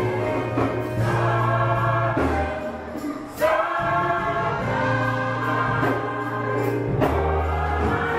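Gospel choir singing in full harmony over low held accompaniment notes. About three seconds in the sound dips briefly, then the voices come back in strongly on a rising line.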